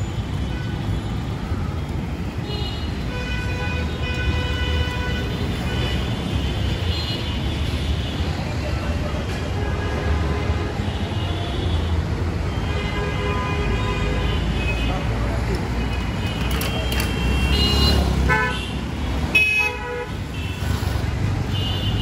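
City street traffic rumbling steadily, with vehicle horns honking again and again, several long steady honks overlapping. A short run of quick beeps comes near the end.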